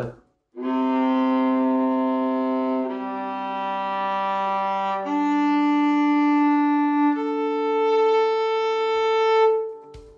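Viola's four open strings bowed one after another, from lowest to highest (C, G, D, A), each note held for about two seconds with a deep tone. The last note fades out shortly before the end.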